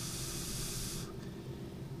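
A breath blown across the vane of a handheld anemometer: a short hiss, ending about a second in.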